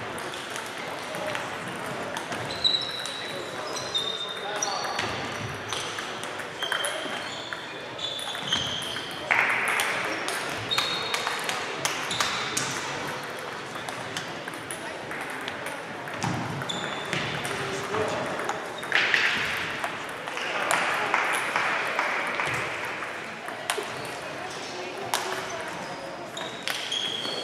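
Table tennis balls being hit at several tables at once: short, high clicks of ball on bat and table in irregular rallies that overlap one another.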